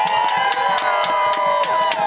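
A group of older women's voices holding a long final sung note together, with clapping and cheering from the crowd.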